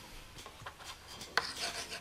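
Faint scratchy, rubbing noise with scattered small clicks, one sharper click about a second and a half in.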